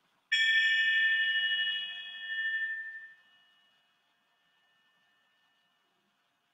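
A small metal triangle struck once, giving a bright, high ring of several tones that fades away over a few seconds.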